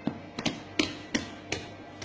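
Hands slapping a block of dough on a stainless steel table to square it up: six sharp slaps, about three a second.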